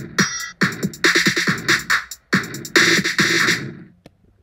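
Programmed trap drum beat from GarageBand's Drummer ('Trap Door' preset): deep kicks, claps and fast hi-hat rolls at maximum complexity and volume. The beat stops about three and a half seconds in and fades out.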